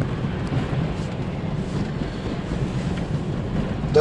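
Steady low road and tyre noise with engine hum, heard inside the cabin of a 2018 Toyota RAV4 driving on a wet, broken road.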